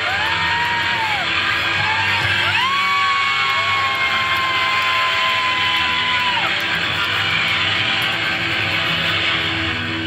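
Live pop band playing with electric guitar and keyboard. A high note swoops up about two and a half seconds in and is held steady for several seconds over the band.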